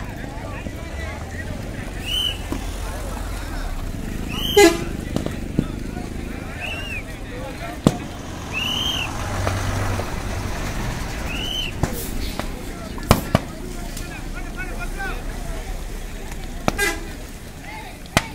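Fireworks stock in a burning shop going off: sharp bangs at irregular intervals, the loudest about four and a half seconds in and a quick pair around thirteen seconds, with short rising-and-falling whistles between them. People talk and laugh over a low steady rumble.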